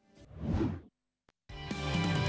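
A whoosh sound effect swells and fades over about a second as a TV segment bumper's graphics sweep in, followed by a brief tick and then the bumper's music, with held notes, starting about halfway through.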